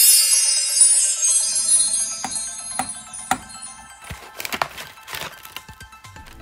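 A twinkling sparkle sound effect, bright and shimmering, fading over about three seconds above a slowly rising tone. It is followed by a few sharp clicks and, near the end, short swishing noises.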